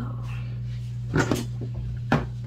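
A steady low hum, with two short knocks a little past the middle.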